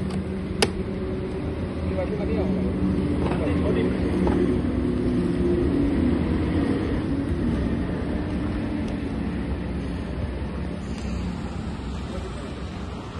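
A steady low rumble like a running engine or traffic, with indistinct voices in the middle and a single sharp click about half a second in.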